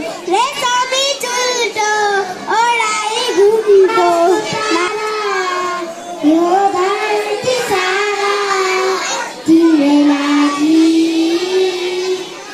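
A young girl singing into a microphone, one voice gliding between notes with a slight waver, ending on a long steady held note.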